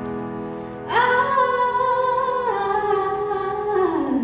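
A woman singing to her own grand piano accompaniment: a piano chord rings on, then her voice comes in about a second in with long held notes that step down in pitch twice.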